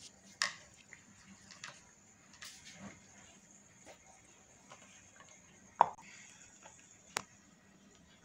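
Scattered light clicks and knocks of a plastic funnel and plastic cups being handled and set down on a glass tabletop. The loudest knock comes just before six seconds in, with a short sharp click about a second later.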